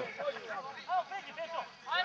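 Faint, distant shouting of footballers and spectators, with short broken calls and a louder one near the end.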